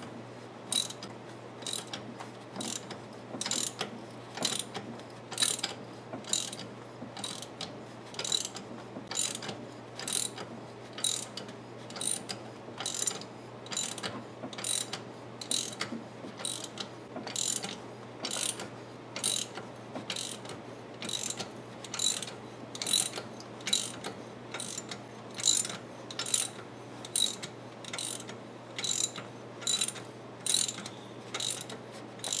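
Ratchet wrench clicking in a steady rhythm, about one to two clicks a second, as it turns a bolt on the harmonic balancer of a Ford 4.0L V6, likely the centre bolt of a bolt-type wheel puller drawing the balancer off the crankshaft.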